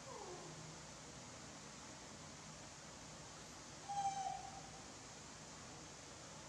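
Young macaque giving two short, high coo calls: a faint one falling in pitch at the start, and a louder one about four seconds in, lasting about half a second.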